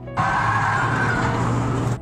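A car driven hard, with engine and road noise. It cuts in suddenly just after the start and stops abruptly.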